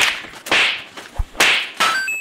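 A quick series of whip-like swishing strikes, about four in two seconds, with a dull thud between the last two, as in a staged fight beating.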